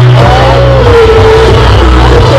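Loud amplified music from an outdoor stage's PA: deep bass notes held under one long sliding melodic line, with a crowd around.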